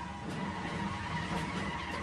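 Cartoon sound effect of a car speeding away, its engine running steadily under a long tyre skid.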